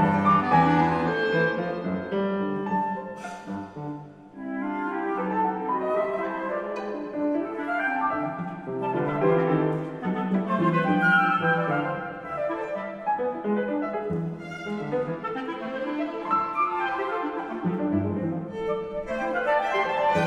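Live chamber ensemble of flute, violin, cello and piano playing contemporary concert music built on a ragtime theme. The texture thins out briefly about four seconds in, then the full ensemble plays on.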